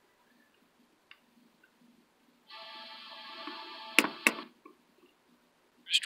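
Near silence, then about two and a half seconds in, a snatch of music from an FM radio station, heard through headphones, that lasts about two seconds before the channel scan moves on. Two sharp clicks of the radio's button come near the end of the music.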